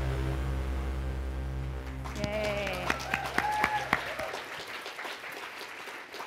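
Audience applauding, the clapping starting about two seconds in, as sustained closing music fades out near the middle; a few short calls or cheers rise over the clapping.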